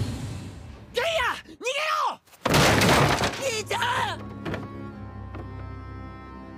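Anime episode soundtrack: a voice cries out in rising and falling wails, then a loud crash about two and a half seconds in, like something shattering. After it comes more voice, then sustained music.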